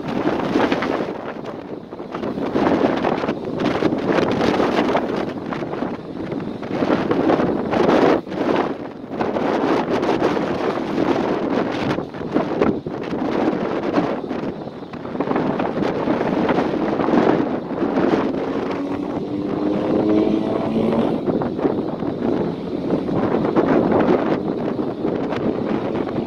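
Wind buffeting the microphone in heavy, uneven gusts. About three-quarters of the way through, a motor is heard briefly rising in pitch under the wind.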